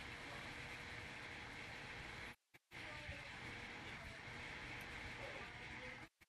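Faint, steady hiss-like background noise that cuts out abruptly for a moment about two and a half seconds in, then returns.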